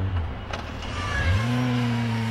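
Motorcycle engine running. Its steady note fades away just after the start, then about a second in the revs climb quickly and hold at a higher, steady pitch.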